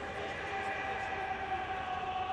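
Football stadium crowd noise with a long, steady horn-like tone sounding over it. The tone sets in at the start and sags slightly in pitch.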